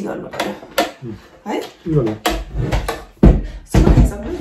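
Mostly people talking at close range, with a low rumble from about halfway through and two loud thumps near the end.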